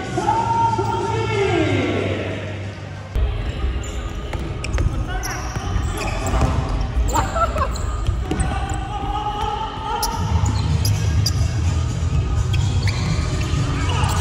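Indoor futsal play on a wooden hall floor: sharp knocks of the ball being kicked and bouncing, short shoe squeaks, and players' voices shouting in an echoing hall, with a low steady rumble from about three seconds in.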